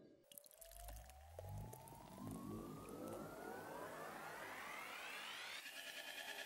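Intro sound effect: a faint tone rising steadily in pitch for about five seconds, with low thuds in the first two seconds. It builds up into electronic intro music.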